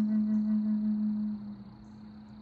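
Native American flute holding one long low note, which ends about a second and a half in, leaving a faint lingering tone.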